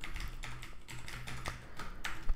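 Computer keyboard typing: a quick run of faint keystrokes as code is entered.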